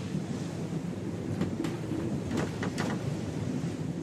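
Ocean waves and wind, a steady rushing noise, with a few brief sharp sounds in the middle.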